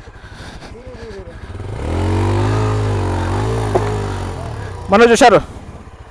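Single-cylinder adventure motorcycle ticking over with an even thump, then revved hard under load for about two and a half seconds as it climbs over a rocky step, the revs rising and then falling away. Near the end, a short loud shout.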